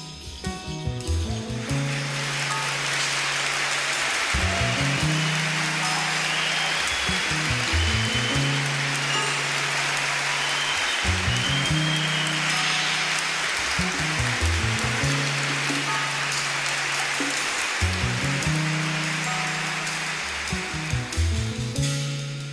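Jazz orchestra with strings and piano playing an instrumental introduction: a repeating low bass figure of long held notes under a steady high shimmer.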